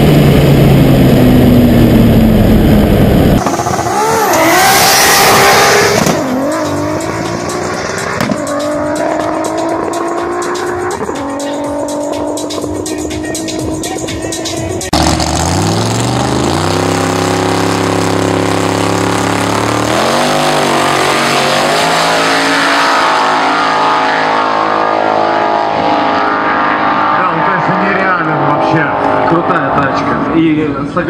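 High-revving engine of a 1000 hp Nissan Skyline GT-R R34, heard from inside the cabin at high speed in sixth gear, its pitch falling. Then a car accelerates hard through the gears, each rise in pitch cut off by a drop at the upshift. About fifteen seconds in, drag-race cars launch from the line, their engines climbing from a low pitch up through the gears.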